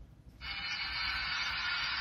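Audio of a streamed video coming out of a Coolpad Cool 1 phone's loudspeaker, starting suddenly about half a second in as playback begins: a steady, hissy wash with faint tones in it.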